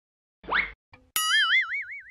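Cartoon comedy sound effects: a short rising zip about half a second in, then a louder wobbling boing from just past one second, played as a comic reaction sting.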